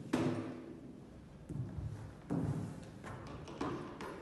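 A person rolling and shifting on a gym floor: a few dull thuds and bumps of the body against the floor, the loudest right at the start, then more about one and a half, two and a half and three and a half seconds in.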